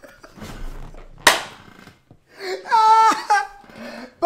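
One sharp, loud slap a little over a second in, among breathy rustling, followed around three seconds in by a short high-pitched vocal outburst, like a laughing shriek.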